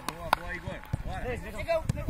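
Football kicked on a grass pitch: two sharp thuds, the louder about a third of a second in and another near the end, among players' shouting voices.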